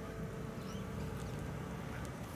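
Faint, steady low rumble of outdoor background noise with no distinct events.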